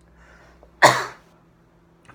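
A man sneezes once: a single short, sharp burst a little under a second in, preceded by a faint intake of breath.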